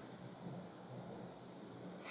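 Faint room tone: a low steady hiss with a thin, steady high-pitched whine, and no distinct sound.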